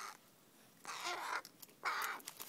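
A crow giving two short, harsh, raspy calls, one about a second in and a shorter one near the end.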